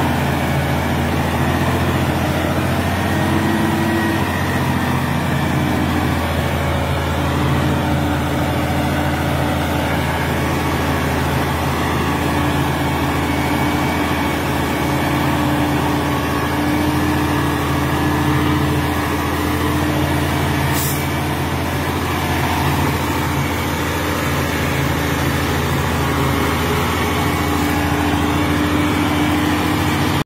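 Volvo tractor unit's diesel engine running steadily while pulling a giant excavator on a lowboy trailer, a load heavy enough to lift the truck's front wheels. A short hiss comes about twenty seconds in.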